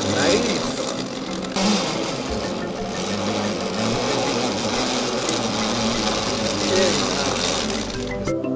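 Zipline pulley rolling fast along a steel cable under a harnessed rider, a steady whir with a sudden break about one and a half seconds in, then continuing.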